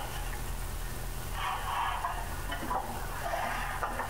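Pause in a lecture recording: steady recording hiss with a low mains hum, and a faint muffled murmur a couple of times in the middle.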